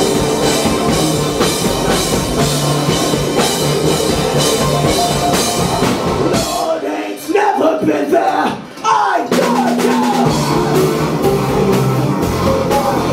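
Live rock band playing with a driving drum kit and bass. About six and a half seconds in, the drums and bass drop out for roughly three seconds, leaving a lone sliding melodic line, then the full band comes back in.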